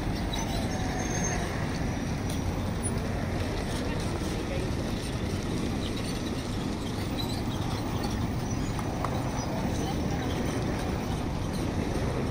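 Indistinct chatter of passers-by over a steady rumble of road traffic.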